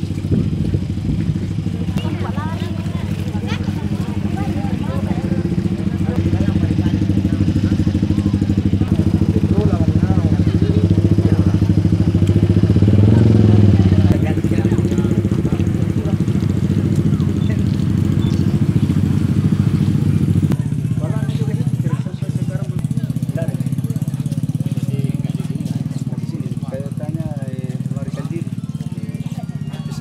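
An engine running steadily, loudest about halfway through, then dropping away sharply about two-thirds of the way in, with people talking in the background.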